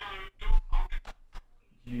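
Brief, broken snatches of speech separated by short, sudden silences.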